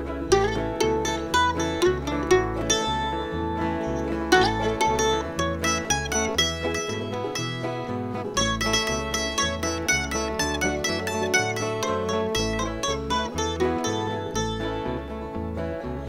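Instrumental break of a bluegrass arrangement of a traditional American folk song: plucked mandolin, guitar and banjo over a steady alternating bass line, with no singing.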